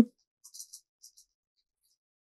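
A few faint, quick computer keyboard key clicks around half a second in and again near one second, as a typo in a line of code is corrected.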